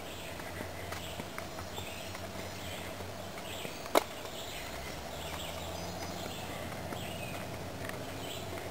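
Footsteps walking on a dirt woodland trail, with one sharp click about halfway through.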